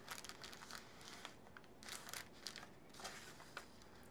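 Faint, scattered rustling and crinkling of paper as hands press a flattened paper cupcake liner onto a paper plate and handle the paper pieces.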